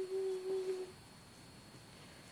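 A voice humming one long held note that stops a little under a second in, leaving quiet room tone.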